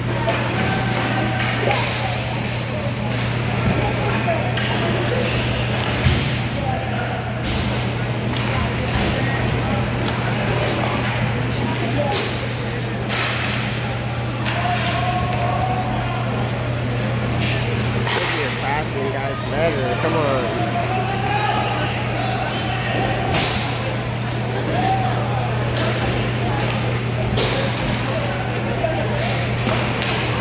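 Roller hockey play in an echoing indoor rink: sharp clacks of sticks and puck at irregular intervals over a steady low hum, with players' and spectators' distant voices and calls rising now and then through the middle and later part.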